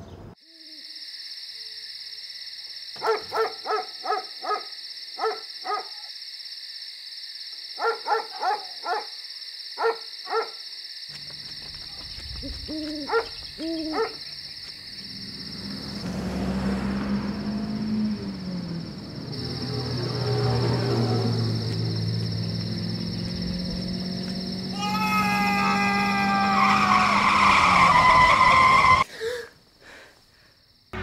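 Film sound design: short owl-like hoots over a steady high ringing drone, then a car's engine rumble and rain that swell to a loud peak before cutting off suddenly near the end.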